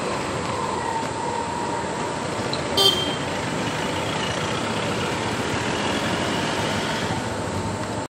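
Steady road traffic noise, with a short, sharp horn toot about three seconds in that is the loudest sound.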